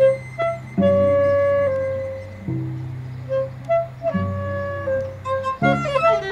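Cello and clarinet improvising together: the cello bows three long low notes one after another while the clarinet plays short notes above. Near the end both break into a quick run of notes.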